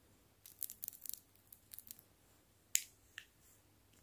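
Fingernails tapping and clicking on small plastic light-up toys. A quick flurry of soft taps fills the first two seconds, then one sharper click comes a little before the three-second mark, followed by a fainter one.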